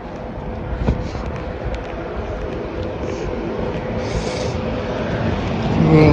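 Road traffic: a steady rush of passing vehicles with a low engine hum, growing louder toward the end.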